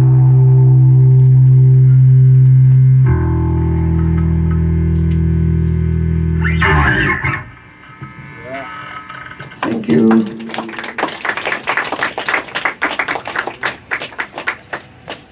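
A live rock band holds a sustained, distorted final chord that changes once about three seconds in and stops sharply about seven seconds in. After a short lull, the audience claps and cheers from about nine and a half seconds to the end.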